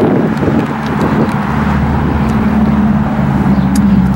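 Steady low hum of a motor vehicle's engine running, with wind rumbling on the microphone.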